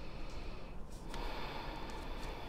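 A person breathing into a close clip-on microphone: two long, soft breaths, the first ending just before a second in and the next following right after.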